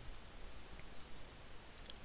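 Quiet room tone with a faint steady hiss, and a brief faint high chirp about a second in.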